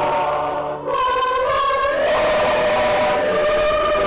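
Church choir singing a hymn of thanksgiving, breaking briefly about a second in, then holding one long note through the second half.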